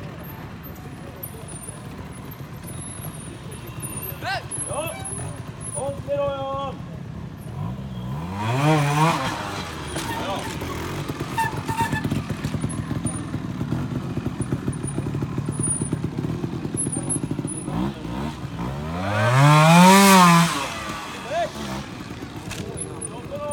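Trials motorcycle engine idling with a low steady putter, blipped up and back down twice: once about eight seconds in and again near the end, the second rev the loudest.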